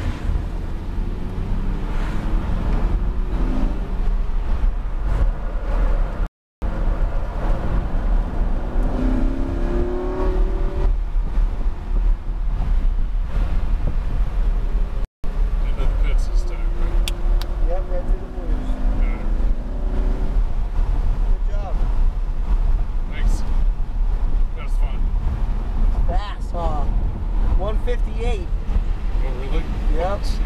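Lamborghini Huracán LP610-4's 5.2 L V10 heard from inside the cabin, a steady low rumble whose pitch rises and falls several times as the car accelerates and eases off through the corners. The sound drops out completely twice for a split second.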